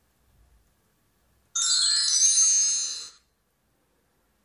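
A bright, high-pitched chime sound effect starting suddenly about a second and a half in, ringing with many steady high tones for under two seconds and then fading out.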